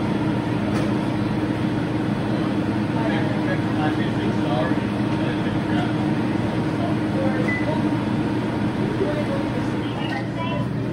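Steady low hum and rush of commercial kitchen equipment running while a gas fryer heats its oil, with faint voices in the background.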